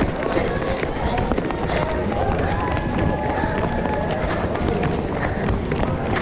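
Running footsteps of many children on an asphalt street, with the camera jolting at each stride, and children's voices calling and chattering throughout.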